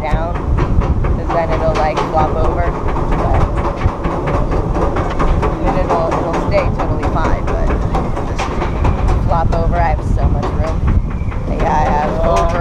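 Steel roller coaster train climbing its chain lift hill: a steady low rumble of the chain with rapid, even clicking of the anti-rollback ratchets.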